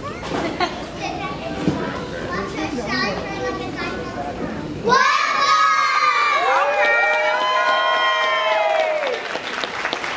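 Children's voices and chatter in a large hall. About halfway through, a group of young children on stage break into a long, drawn-out cheer together, many voices overlapping, that dies away near the end.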